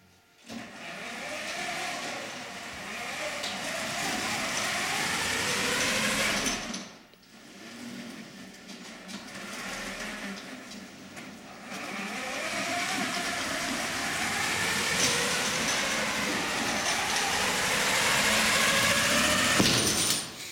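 FIRST robotics robot's electric drive motors and chain drive whining as it drives, the pitch rising as it speeds up and falling as it slows. The drive stops for about a second a third of the way in, runs again, and cuts off suddenly at the end.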